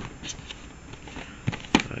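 Handling noise from a cardboard phone box being held and turned by hand: light rustling with a few short clicks, the sharpest a little before the end.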